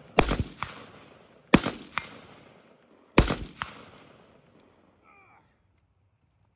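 Gunshots outdoors from a shooter firing prone: three pairs of sharp reports about a second and a half apart, each echoing away, the second report of each pair fainter and coming just under half a second after the first.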